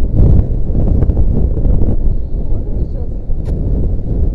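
Strong wind buffeting the microphone at an exposed height: a loud, low rumble that rises and falls unevenly.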